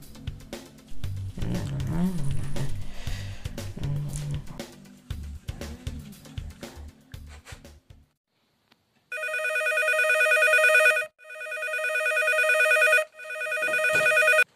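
Background music, then after a short pause a telephone rings three times. Each ring lasts about two seconds and grows louder.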